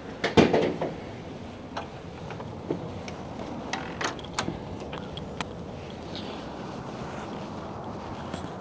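A door opening with a loud clatter just under a second in, then scattered footsteps over a steady outdoor background hiss.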